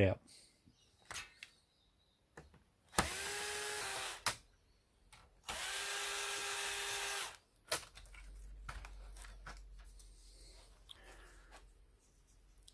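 Bosch cordless drill-driver backing out the heatsink screws in two steady runs: one of about a second, three seconds in, and a longer one of nearly two seconds shortly after. Scattered clicks and handling knocks come between and after the runs as the heatsink is worked loose.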